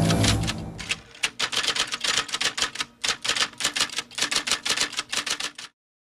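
Typewriter sound effect: a fast run of key clacks, about eight a second, going with on-screen text being typed out, that stops suddenly just before the end. A fading music tail carries through the first second.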